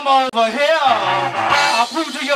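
Live band playing with harmonica, electric guitar, bass guitar, drums and keyboard; the lead line bends up and down in pitch over a steady bass.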